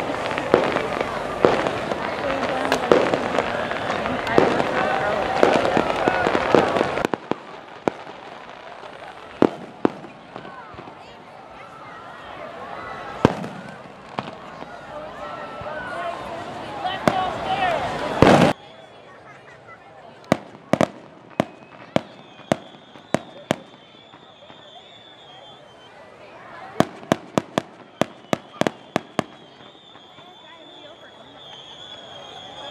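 Fireworks going off: sharp bangs over a crowd's chatter. After an abrupt drop in the background, the bangs come one by one, then in a quick string of about a dozen near the end.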